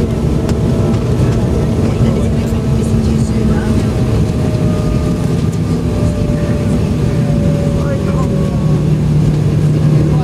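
Embraer 195 jet's GE CF34 turbofan engines heard from the cabin over the wing, running steadily while the aircraft taxis, with a hum and a thin whine that both drift slowly lower.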